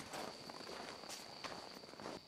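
Faint footsteps in snow, several uneven steps, with a steady thin high-pitched tone behind them.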